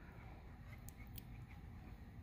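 Very quiet room tone with about three faint, light ticks around the middle, from soft copper coiled wire being handled between the fingers.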